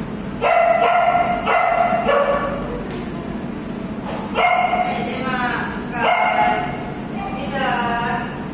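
Dogs, among them an Alaskan malamute, giving a string of about seven high-pitched barks and yelps in quick groups, several of them falling in pitch.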